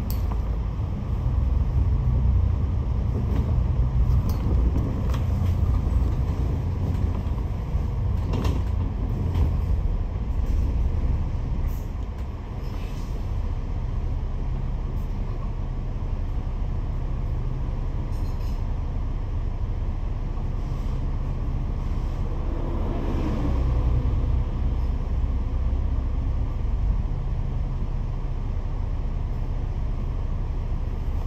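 Double-decker bus heard from inside the cabin while it drives: a steady low engine and road rumble with a few faint knocks and rattles.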